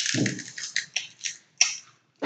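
Crunching on a crisp white-cheddar puffed snack, close up: a quick irregular run of sharp crackles through the first two seconds.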